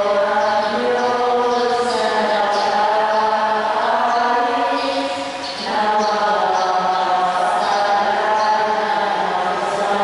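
Voices singing a slow, chant-like church hymn in long held notes, with a short pause for breath about halfway through before the singing carries on.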